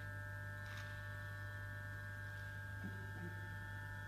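Steady low electrical hum from the amplified guitar and live electronics, with several faint high tones held steady above it. There is a faint brief rustle about a second in and a couple of soft low blips near the end.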